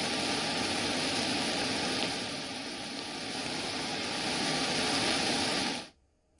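A waterfall swollen by continuous heavy rain, with muddy floodwater pouring over the rock as a steady rush. It dips a little in the middle and cuts off suddenly just before the end.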